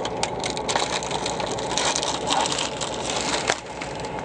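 Vehicle running with a steady low drone and constant rattling and clicking, with a sharper knock about three and a half seconds in, after which the sound drops a little.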